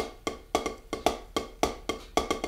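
Pair of wooden drumsticks striking a rubber practice pad in alternating strokes, about four to five hits a second, some louder than others.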